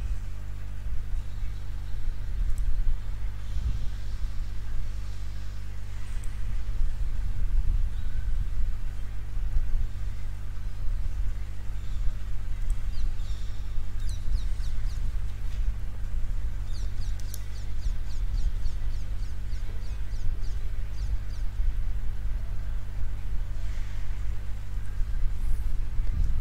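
Steady low electrical hum with a stack of evenly spaced overtones. Two short runs of faint clicks come about halfway through.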